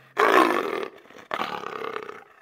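Two rough, roar-like animal calls, each lasting under a second, the second weaker than the first.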